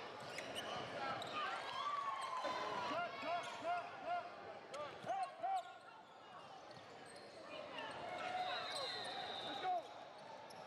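Basketball sneakers squeaking on a hardwood gym floor during play: a quick run of short squeaks in the middle, among ball bounces and spectators' voices.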